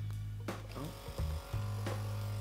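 Small electric motor of a handheld pore-vacuum blackhead remover running with a steady low hum. It stops about half a second in, then starts again about a second later, with clicks like its power button being pressed.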